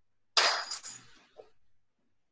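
Kitchenware clattering: a sudden burst of a few quick clinks with a short metallic ring, starting about half a second in and dying away within a second.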